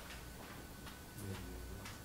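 Faint handling noises: a few light, irregularly spaced clicks and taps over a low room hum.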